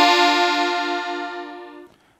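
Three-row diatonic button accordion in F (F–B♭–E♭ rows) sounding one held chord of four treble buttons pressed together, the pinky adding the high top note that gives the chord its bright edge. The chord wavers slightly and fades out steadily, stopping near the end.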